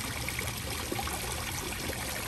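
Water trickling and splashing steadily over the rocks of a garden water feature.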